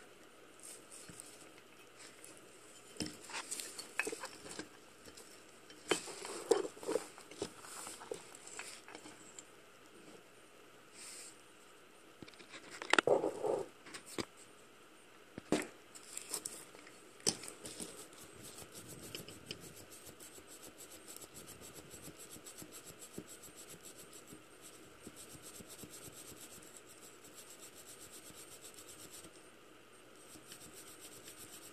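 Handling and cleaning of disassembled metal Nikki carburetor parts: irregular clinks and knocks of the parts being turned over and set down, loudest about halfway through. After that comes a quieter, rapid, steady scratching, like a cleaning wire or brush working a passage.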